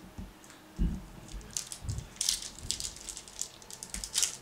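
A foil trading-card pack wrapper crinkling and crackling as it is handled and torn open by hand. A couple of soft knocks come in the first two seconds as the pack is picked up.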